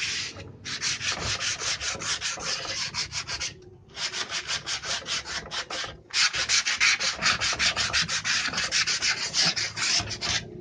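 Sandpaper rubbed by hand over a bare wooden door panel in quick back-and-forth strokes, about five a second. The rubbing breaks off briefly three times: just after the start, about four seconds in, and about six seconds in.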